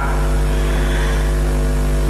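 A steady, even hum of several held tones over a strong low drone, which starts and cuts off suddenly.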